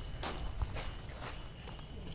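A few short scuffing footsteps on gravelly asphalt, over a low rumble.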